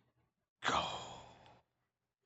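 A man's voice: one breathy, drawn-out shout of "go!" about half a second in, loud at first and fading away over about a second.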